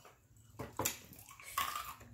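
A couple of sharp, wet clicks about half a second in from a finger being licked and sucked clean of seafood-boil sauce, followed by a short breathy sound near the end.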